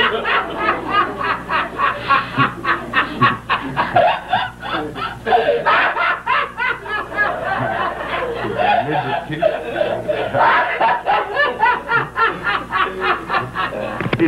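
Prolonged laughter in quick, repeated ha-ha pulses, breaking out right after a joke's punchline.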